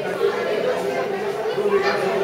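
Crowd chatter: many people talking at once, a steady murmur of overlapping voices with no single speaker standing out.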